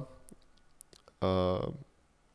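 Speech only: a man says one word, about a second in, in a rapid spoken list. A few faint clicks come in the quiet just before it.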